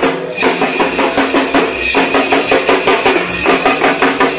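Dhak drums beaten with sticks in a fast, driving rhythm, with a handheld bell-metal gong (kansar) struck along with them and ringing over the beat.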